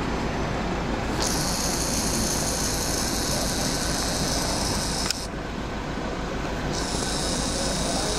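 Vehicle engine idling with a steady low pulsing rumble, overlaid by a high hiss that switches on about a second in, cuts out near five seconds and returns near seven.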